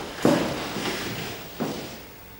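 Two sharp knocks, one just after the start and one near the end, each with a short echoing tail.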